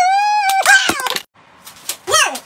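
A high-pitched wavering wail, held on one note, ends about half a second in. A short harsh burst of noise follows, and then it goes quiet.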